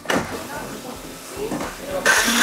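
A metal frying pan knocking once against the gas stove, followed by faint background voices in the studio kitchen.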